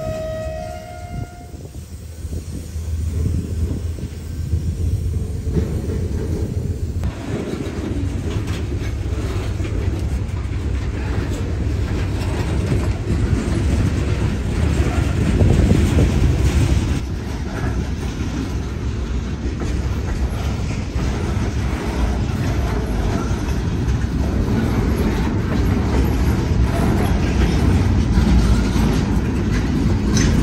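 Freight cars rolling past on jointed track: a steady low rumble of steel wheels on rail with a continuous clatter, growing louder as the cars go by. A diesel locomotive's horn sounds at the start and cuts off in the first second or two.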